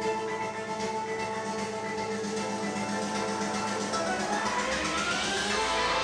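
Instrumental music played through a Tesla Model Y's own speakers as part of its light show. Held notes give way to a rising sweep that builds near the end.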